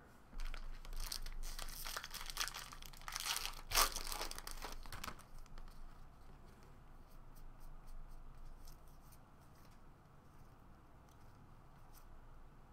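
A foil trading-card pack being torn open and crinkled, loudest about four seconds in and stopping at about five seconds, then faint clicks and rustle of the cards being handled.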